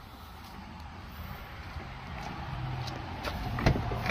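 Footsteps on an asphalt driveway, then a pickup truck's door latch clicks and the door is pulled open near the end.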